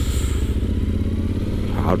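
Yamaha XT1200Z Super Ténéré's parallel-twin engine running steadily at low speed as the bike filters between queued cars.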